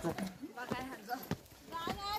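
People talking as they walk up a stone trail, with a few sharp footfalls or knocks on the stones.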